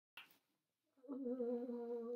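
A short click at the very start, then a person humming one long, steady note from about a second in.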